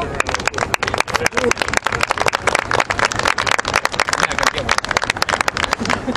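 Sideline spectators clapping close to the microphone, a dense, irregular run of hand claps that goes on throughout and eases near the end.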